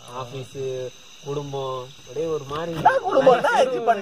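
Men talking, louder from about halfway through, over a steady high-pitched chirring of crickets.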